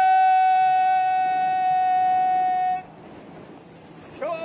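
A man's voice holding one long, high, steady sung note that breaks off a little under three seconds in; after a short breath, a new note begins with an upward scoop at the very end.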